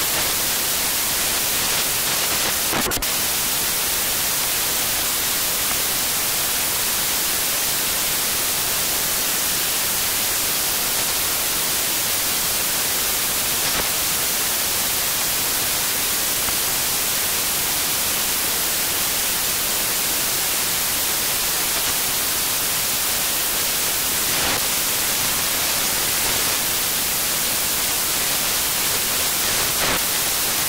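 Steady static hiss like an untuned TV, brightest in the treble, with a couple of faint clicks, one about three seconds in and one near the end.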